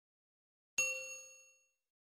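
A single bell-like ding from a subscribe-animation sound effect, ringing out in several clear tones and fading over about a second.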